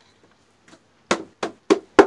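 Wooden mallet knocking on the ends of reed stalks packed in a wooden press, tapping them level: four quick knocks starting about a second in.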